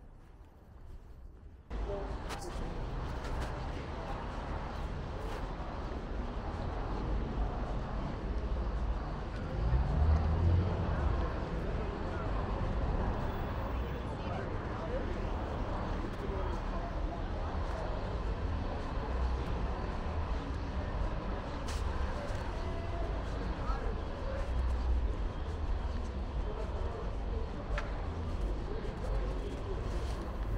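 Busy city street ambience under an elevated rail line: steady traffic and background noise with the voices of passersby, starting suddenly after a quiet second or two. A louder low rumble swells about ten seconds in.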